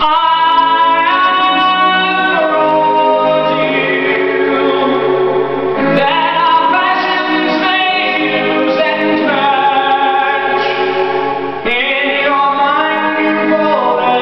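A man singing a Broadway show tune over an orchestral backing track, holding long notes that glide between pitches.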